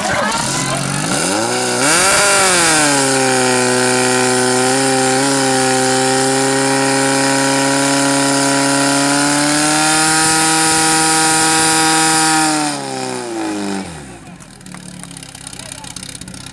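Portable fire pump engine revving up to full speed over the first two seconds and running steadily at high revs while it feeds water through the hoses, then dropping off about thirteen seconds in as it is throttled back.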